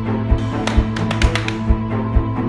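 Trailer score: held tones over a steady low beat about twice a second, with a quick run of sharp taps in the middle.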